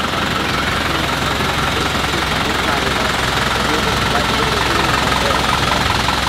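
Mitsubishi Fuso 4WD minibus engine running steadily at low speed close by, as the bus moves slowly past.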